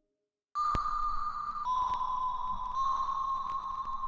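Steady high-pitched electronic whine that sets in about half a second in, after a brief silence. It steps a little lower in pitch a couple of times and has faint ticks in it.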